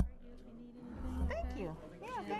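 Voices in a meeting room: a sharp thump at the start, then about a second in a high-pitched voice sliding up and down in pitch amid low background talk.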